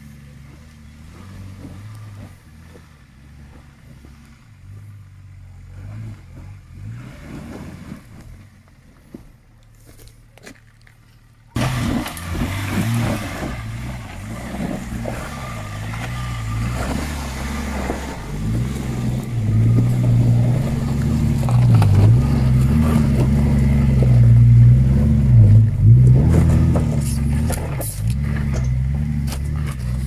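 Range Rover P38 engine running under load as the 4x4 crawls up over rocks. It is fairly quiet at first and turns suddenly much louder and closer about a third of the way in. In the second half the engine note rises and dips several times as it is worked.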